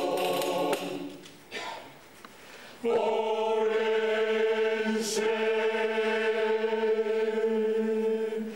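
Mixed choir of men's and women's voices singing unaccompanied: a phrase ends about a second in, and after a short gap the choir holds one long steady chord from about three seconds in.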